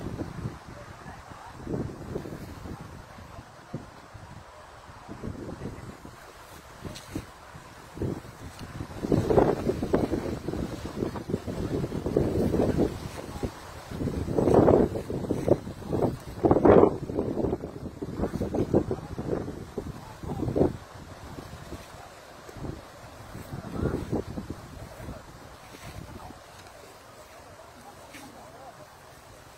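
Wind buffeting the phone's microphone, a low rumble that comes and goes in irregular gusts and is strongest through the middle of the stretch.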